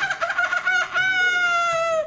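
A high-pitched voice imitating a monkey for a chimpanzee puppet: a quick run of short chattering notes, then one long held call that falls slightly in pitch and stops at the end.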